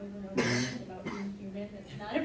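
A woman coughs once, sharply, about half a second in, between stretches of voice.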